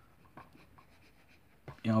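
Faint scratching of a pencil sketching on paper, a few short strokes.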